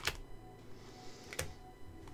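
Tarot cards being handled on a table: two sharp clicks about a second and a half apart with a soft rustle between them, over faint background music.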